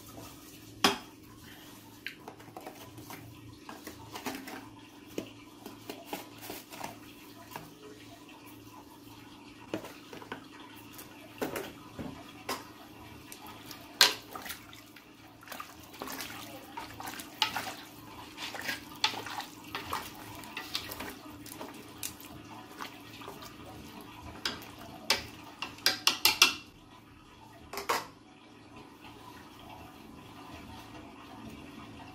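A metal utensil clinking and scraping against a metal pot as meat pieces in broth are stirred, with some sloshing of liquid. The knocks come at irregular intervals, with a quick run of clinks near the end.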